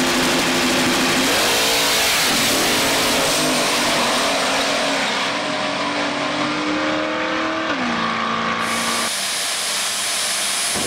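Drag race cars launching and running at full throttle down the strip, engine pitch bending early and then climbing slowly. Near the end the pitch drops as the throttle comes off, and the sound changes suddenly to a different, duller rumble.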